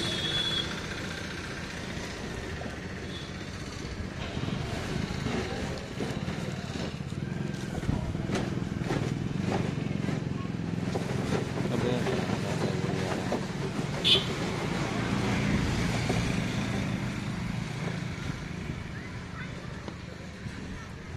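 Outdoor background of voices and a steady low traffic or engine hum, with scattered clicks from a phone and its plastic case being handled, and one short sharp high sound about 14 seconds in.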